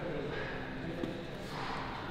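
Quiet gym room tone with faint voices in the background and a single soft knock about halfway through.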